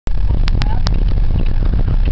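Low, steady rumble of a car's engine and road noise heard from inside the cabin while driving, with three sharp clicks about half a second to just under a second in.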